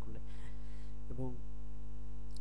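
Steady electrical mains hum: a low buzz with fainter higher tones held level. One brief spoken word comes about a second in.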